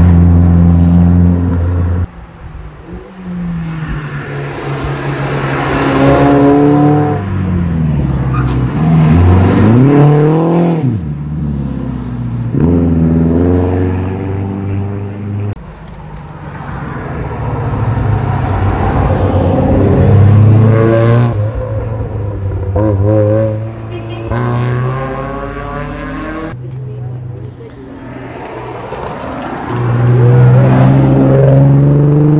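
Car engines revving hard as several cars drive past one after another on a twisting road, the engine note climbing and falling as they accelerate and go by. The sound cuts off abruptly a few times between passes.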